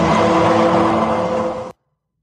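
An edited-in sound-effect sting marking the verdict: a sudden, dense, noisy sound with a few steady tones underneath, held for just under two seconds, then cut off abruptly.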